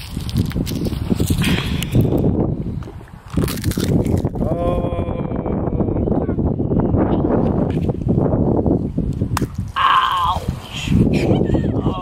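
Rough rumbling and rustling from a camera microphone handled close against a child's clothing, running throughout. A child's short vocal sounds come through about four and a half seconds in and again near the end.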